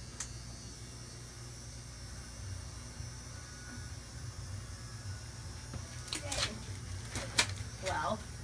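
Quiet room tone: a steady low hum, with a few brief voice sounds near the end.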